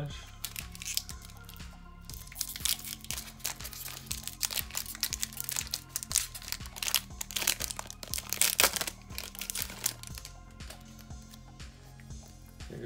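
Foil wrapper of a Pokémon booster pack crinkling and tearing as it is torn open by hand, a dense run of crackles that dies away about ten seconds in. Background music plays under it.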